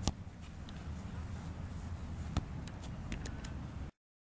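A soccer ball kicked on grass: a sharp thud right at the start and another about two and a half seconds in, over a steady low outdoor rumble. The sound cuts off abruptly just before the end.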